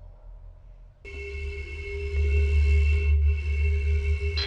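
Eerie horror film score: a deep, rumbling low drone and steady, high held tones come in suddenly about a second in and grow louder.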